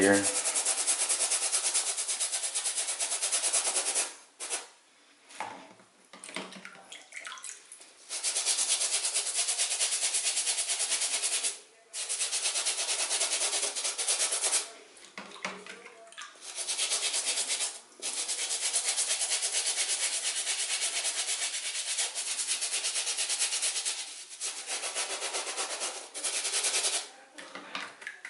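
Stiff shoe brush scrubbing a wet knit sneaker upper with foaming cleaning solution, in rapid back-and-forth strokes. It comes in long runs of several seconds broken by short pauses, with a longer pause about four seconds in.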